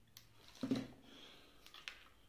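Handling noise of a cable and the plastic boot of a crocodile clip being pushed and worked by hand: a short rubbing burst near the middle, then a few small clicks near the end.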